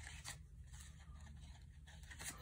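Near silence, with faint rustles of trading cards being handled.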